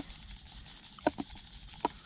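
Fine fluorescent breadcrumb groundbait being rubbed through a fine-mesh bloodworm sieve: a soft, steady rubbing hiss, with a few brief sharper scrapes.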